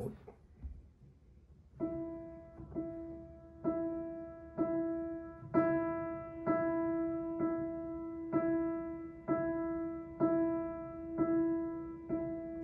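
Steinway grand piano playing one mid-range note over and over, about once a second, starting about two seconds in. Some strokes are played louder than the rest, setting one note apart from its neighbours to create a pulse.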